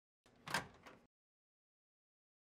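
A microwave oven door being opened: a short clack about half a second in, followed by a smaller click.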